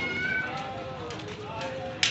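Outdoor street murmur of a crowd: indistinct voices with a few short high-pitched calls early on, and a sharp click at the start and again at the end.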